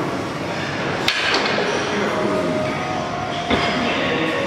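Gym noise with a steady rumble and faint voices, broken by two sharp clanks, about a second in and near the end, from a weight machine being worked through its reps.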